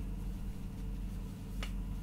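A pause in the narration: a steady low hum of room tone, with one faint click about one and a half seconds in.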